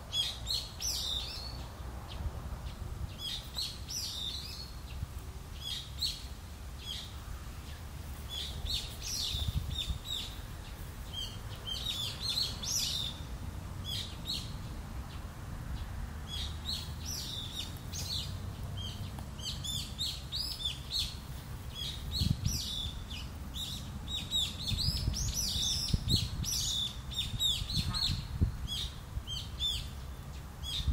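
Small birds chirping and twittering in repeated bunches of short, high notes, over a steady low rumble.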